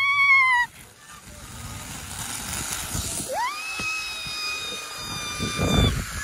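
Zipline trolley pulleys running along a steel cable as the rider sets off, a hiss that builds as speed picks up. A short high cry comes right at the start, and a long high steady tone joins about halfway through.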